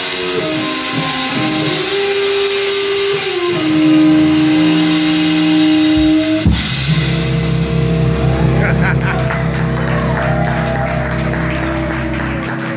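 Live rock trio of electric guitar, electric bass and drum kit playing. Held guitar notes give way, after a drum hit about six and a half seconds in, to one long sustained chord over a steady low bass note.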